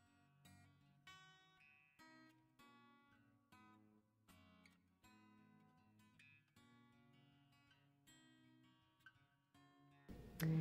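Very faint background music: a series of plucked acoustic guitar notes.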